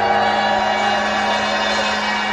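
Live pop band holding a long sustained chord at the close of a song, with faint audience noise.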